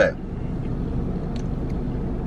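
A car engine idling: a steady low rumble heard inside the cabin, with a couple of faint ticks about halfway through.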